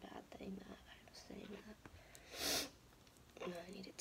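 Quiet, half-whispered mumbling from a woman with a cold. About two and a half seconds in comes one short, loud sniff through a congested, runny nose.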